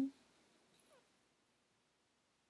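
A spoken word trails off at the very start, then near silence, broken only by a faint, short falling tone just before a second in.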